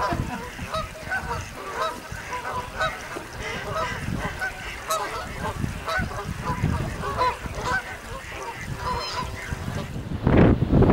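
A large flock of Canada geese and other waterfowl calling, with many short honks overlapping continuously over a low rumble.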